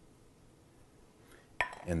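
Near silence, then, about three-quarters of the way through, a single clink of a metal spoon against a glass mixing bowl with a brief ring.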